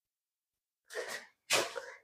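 A man's short breathy sounds from the throat: a faint breath about a second in, then a sharper, louder burst with a sudden start, like a stifled cough, about a second and a half in.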